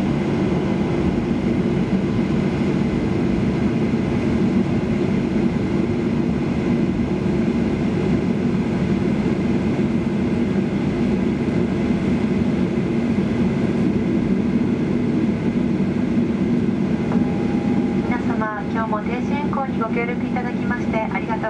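Steady low cabin noise of a Boeing 737-800 taxiing after landing, its CFM56 jet engines running near idle. A cabin PA announcement starts near the end.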